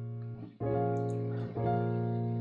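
Piano playing Bb minor seventh chords. A held chord fades and breaks off about half a second in, a new chord is struck right after, and the chord changes again about a second and a half in.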